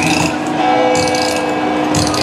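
Brass hand cymbals clashed by a troupe of parade dancers, bright metallic crashes about once a second, over loud carnival music with sustained notes.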